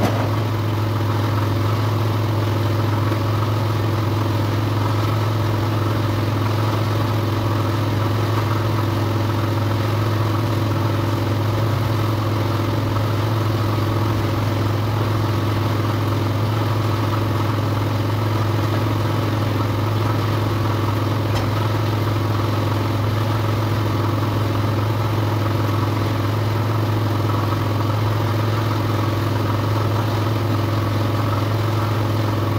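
A steady machine drone with a strong low hum that keeps the same pitch and level throughout, with no knocks or pauses.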